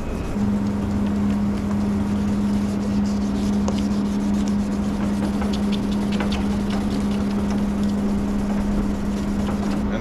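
A steady mechanical hum with one low, even tone, a motor running in the shop, starts about half a second in and holds steady. Under it comes the faint rubbing of wet sandpaper worked by hand over a plastic headlight lens.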